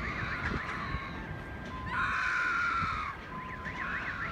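Electronic alarms sounding after a missile strike, with rapid up-and-down yelping sweeps, broken about two seconds in by a louder steady tone that lasts about a second before the sweeps return.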